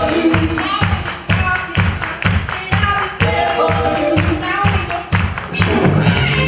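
Live band playing an upbeat song with a steady beat about twice a second, with singing and hand claps over it.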